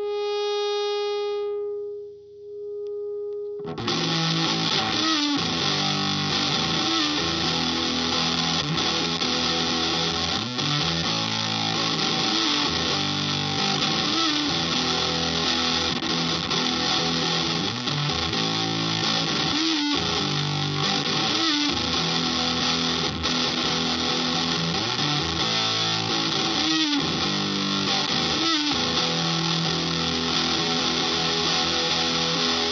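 Electric guitar (Gibson ES-335) through a Pigdog Mk1.5 Tone Bender fuzz pedal into a Vox AC30 amp. A single held note rings and fades, then about four seconds in the guitar cuts in loud and heavily fuzzed, playing chords and riffs continuously.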